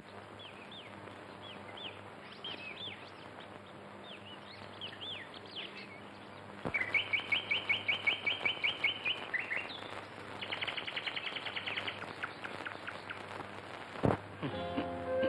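Birds chirping: scattered short, arching high calls for the first few seconds, then from about seven seconds in a louder rapid run of repeated notes, and another fast trill a few seconds later.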